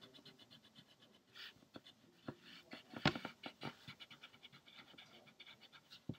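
Graphite pencil drawing lines on paper: a string of faint short scratching strokes and light ticks.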